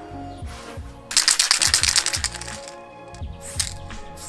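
Aerosol spray-paint can being shaken, its mixing ball rattling rapidly for about a second and a half, followed near the end by a short spray hiss, over background music.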